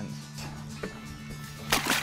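Background music with low steady tones; near the end, a short splash as a shark strikes the bait at the water's surface beside the boat.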